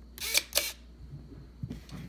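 Small hobby servo whirring twice in quick succession, each burst short and sharp, as its arm swings onto the push-button switch and back, toggling the electromagnet. A few faint small knocks follow.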